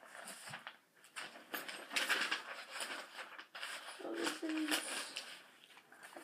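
Sheets of paper rustling and shuffling as they are handled, in irregular bursts. About four seconds in, a girl's voice makes a short murmur.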